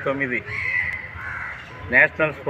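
A man talking, with a drawn-out bird call that runs from about half a second to a second and a half in.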